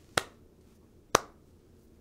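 Slow handclap: two single claps about a second apart.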